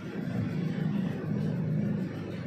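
A steady low rumble that grows slightly louder about half a second in.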